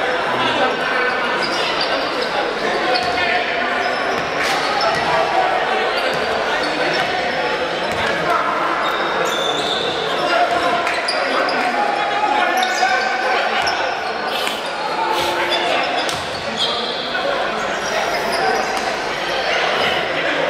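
Echoing indoor basketball game sound: a steady hubbub of voices in a large gym, with a basketball bouncing on the hardwood court and scattered short, sharp knocks.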